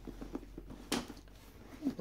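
Light rustling and small knocks from a backpack being handled and opened, with one sharp click about a second in.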